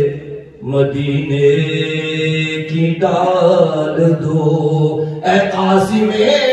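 A man chanting an Urdu naat, drawing out long, held notes with ornamented turns, and a brief breath about half a second in.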